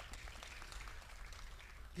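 Faint, scattered applause from an audience: a loose patter of individual hand claps that thins out near the end.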